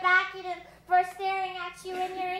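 Voices singing a song in long held notes: one short phrase, a brief break just before a second in, then a longer sustained phrase.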